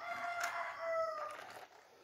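A rooster crowing once, a single long call that dips slightly in pitch before it ends, with a sharp click of plastic toys being handled about half a second in.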